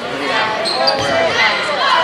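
Indoor basketball game sound in a gym: many overlapping voices of spectators and players, with short sneaker squeaks on the hardwood and the ball bouncing, all echoing in the hall.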